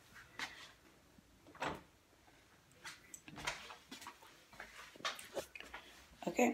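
A few faint, scattered knocks and rustles of handling and movement as a phone is carried about.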